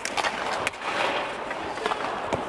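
Ice hockey skates scraping and carving on the ice, with a few sharp clacks of sticks and puck.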